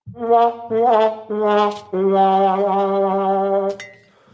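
Sad trombone sound effect: four descending brass notes, the second wavering and the last held for nearly two seconds, the comic 'wah-wah-wah-waaah' that marks a failure or a flop.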